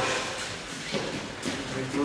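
A couple of soft thuds from children jumping over foam rolls and landing on padded gym mats, with faint voices behind.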